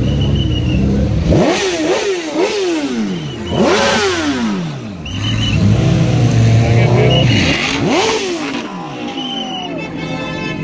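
A sports car's engine revved in a series of quick blips, its pitch shooting up and dropping back several times in the first half. It then drops to a steadier idle, and one more sharp rev blip comes about eight seconds in, over crowd chatter.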